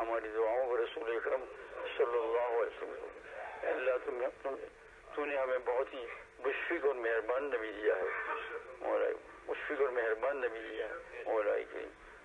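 Speech: a man's voice talking, thin and narrow-band like a telephone or radio line.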